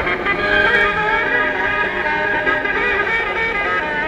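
Music playing: a melody of held notes.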